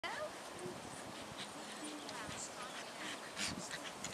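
Faint voices over steady outdoor background noise, with scattered short chirp-like sounds; no bark or other clear sound from the dog.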